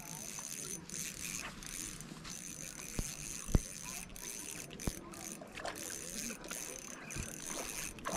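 Spinning fishing reel being cranked steadily to bring in a line that is heavy with weed, with a few sharp knocks of handling.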